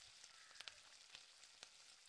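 Faint sizzle of hot oil in a kadai with mustard seeds and cumin just added, with a few faint pops scattered through it.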